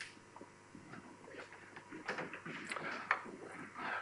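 Faint scattered scratches and light taps of drawing on a board, with one sharper tap about three seconds in.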